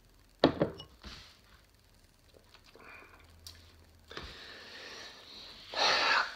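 A stemmed beer glass set down on a tabletop with one sharp knock about half a second in and a lighter knock just after. Later comes a soft, breathy exhale.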